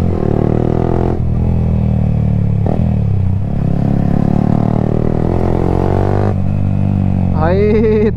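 Yamaha motorcycle with an aftermarket exhaust being ridden in third gear at a steady pace. The exhaust note is loud and holds fairly even, with small rises and dips in revs.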